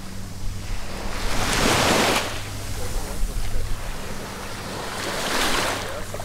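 Small waves washing onto a sandy beach, the surf noise swelling twice, about a second and a half in and again near the end, over a steady low hum.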